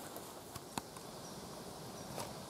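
Faint forest ambience: a soft steady hiss with a few light crackles of steps on the forest floor, and one faint, short, high bird chirp about halfway through.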